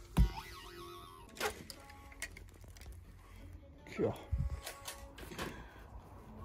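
Plush toy's built-in sound unit going off as it is squeezed: a knock from the squeeze, then electronic tones, with a swooping glide that falls and rises again about four seconds in.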